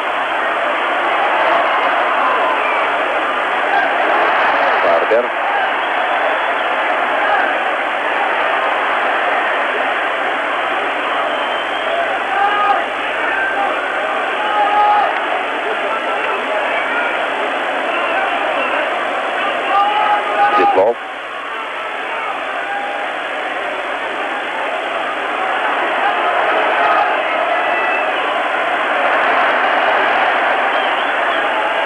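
Arena crowd at an ice hockey game: a steady din of many voices with scattered shouts, heard through an old, muffled TV broadcast soundtrack. The noise drops suddenly about two-thirds of the way through, then carries on a little quieter.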